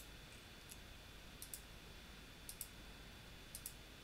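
Faint computer mouse clicks, mostly in quick pairs, about once a second, as nodes are picked one by one on screen.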